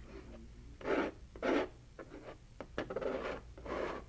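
Metal palette knife scraping and dragging thick acrylic paint across a gesso-primed canvas: several separate rasping strokes, each about a third of a second long.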